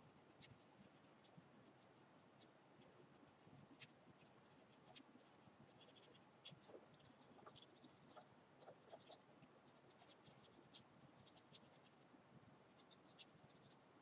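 Felt-tip marker pen scratching on paper in many short, quick strokes. The strokes are faint and come in irregular clusters with brief pauses between them.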